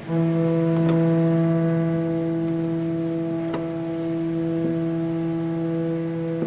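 1964 Balbiani Vegezzi-Bossi pipe organ holding one sustained note steadily, its tone built of a strong stack of evenly spaced overtones. Two faint clicks sound through it.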